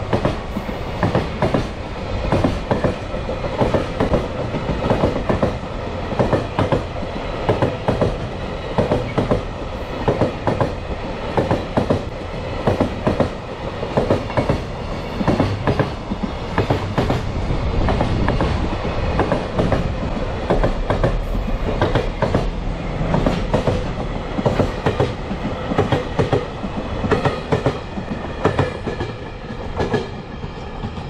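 Freight train's container flat wagons rolling past close by, their wheels clacking repeatedly over rail joints over a low rumble.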